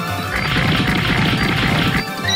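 A noisy crash sound effect, lasting about a second and a half, over background music.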